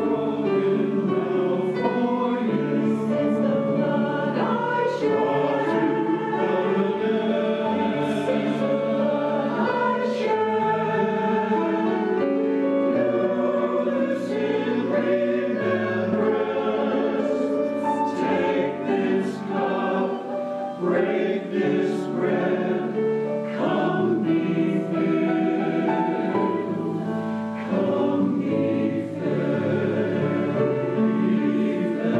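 Church choir singing in harmony, long held notes in flowing phrases.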